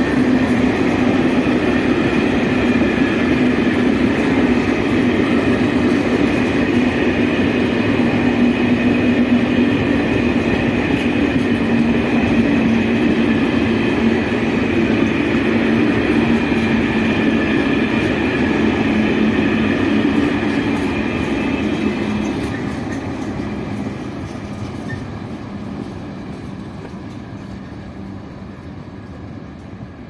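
Freight train of hopper wagons rolling past: steady rumble and clatter of wheels on the rails, with a steady humming tone in it. It fades away over the last third as the end of the train draws off.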